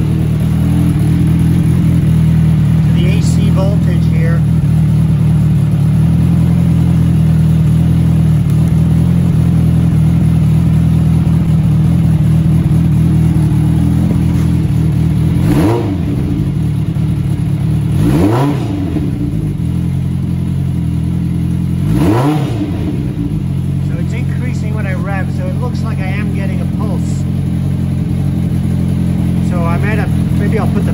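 Suzuki GSX-R 750 motorcycle's four-cylinder engine idling steadily, blipped three times in the second half, each rev rising and dropping back quickly. It now idles and comes off idle without stuttering, its fuel screws turned out a quarter turn.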